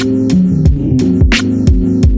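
Lo-fi hip hop beat: a laid-back drum loop with a snare about every second and a half, lighter hits in between, over a low bass line and sustained chords.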